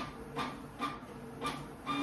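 Unwanted sound playing from a computer that is acting up on its own: short pulses with a tone in them, repeating about twice a second.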